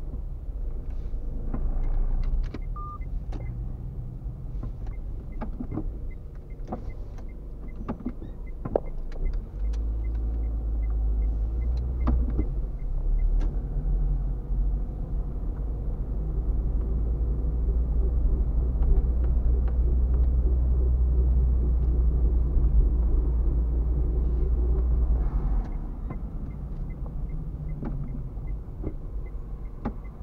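A car being driven, heard from inside the cabin: low engine and road rumble that grows louder through the middle stretch, then drops back near the end. Scattered clicks and knocks are heard, with a faint regular ticking near the start and again near the end.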